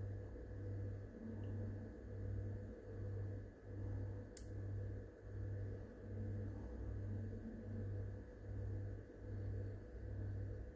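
A low hum that swells and fades evenly, about once every three-quarters of a second, with a single sharp click about four and a half seconds in.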